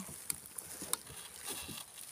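Faint handling sounds: a few soft, scattered clicks and light rustling over a steady faint hiss.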